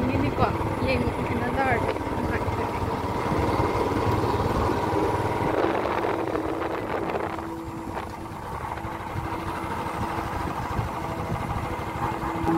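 Wind rushing over the microphone while riding on the back of a motorbike, with the bike's engine running underneath as a steady low rumble. The rush eases a little about eight seconds in.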